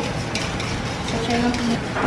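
Wire whisk beating a thin mixture of milk and eggs in a stainless steel bowl, with the wires clicking against the metal a few times.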